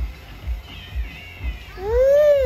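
A cat meowing over background music with a steady beat of about two thumps a second. Faint high cries come in the middle, then one long meow that rises and falls starts near the end.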